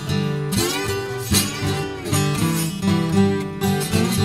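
Acoustic blues band playing an instrumental passage: acoustic guitars on a repeating blues figure, with a lead line that glides in pitch about half a second in.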